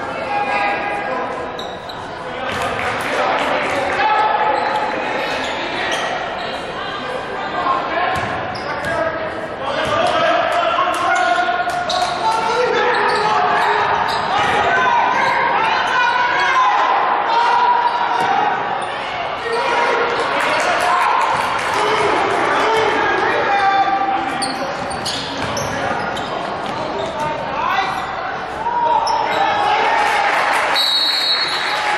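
A basketball bouncing on a hardwood court during live play, with players' and spectators' voices. The sound echoes around a large gym.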